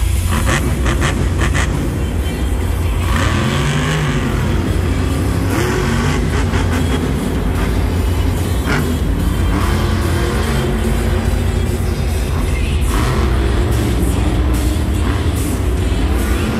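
Monster truck's supercharged V8 engine revving up and down as it drives the dirt arena floor, with loud arena music playing over it.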